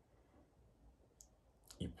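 Near silence: quiet room tone with a single faint, short click a little past a second in, then a man's voice starts speaking just before the end.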